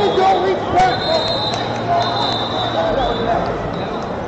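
Overlapping voices of spectators and coaches calling out in a large, echoing hall, with a few sharp knocks among them.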